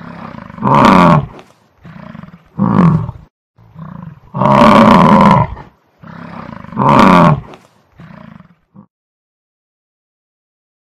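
Lion roaring in a series: four loud roars about two seconds apart, with quieter grunting calls between them, the series stopping about nine seconds in.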